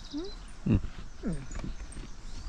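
A person eating a sandwich makes short closed-mouth "mm?" and "mm" murmurs with her mouth full. The first rises like a question; a later one falls.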